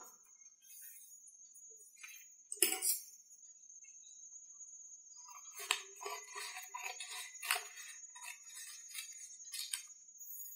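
Faint rustling and creasing of a sheet of paper being folded into a square, in short irregular bursts: one about three seconds in, then a run of them from about halfway to near the end.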